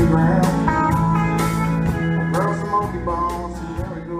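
Live country band playing an instrumental passage: strummed acoustic guitar, keyboard and a drum kit with regular cymbal strokes, with a harmonica playing bending notes over them.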